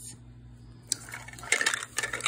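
Hands handling a small plastic toy capsule: a single click about a second in, then a run of small clicks and rustling as the capsule is picked up and turned, over a faint steady hum.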